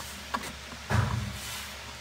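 Handling noise from wiring being moved by hand: a small click about a third of a second in, then a brief low rustle about a second in, over a faint steady background hum.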